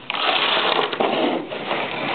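Close rustling and clattering handling noise as hands and an arm move over plastic clothespins and a plastic bucket right by the microphone.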